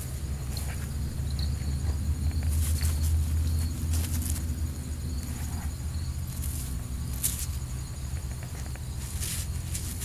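Gloved hands pulling apart a clump of soil and grass roots, giving short crackling rustles every second or two. Under it, a steady low rumble on the microphone and faint crickets trilling.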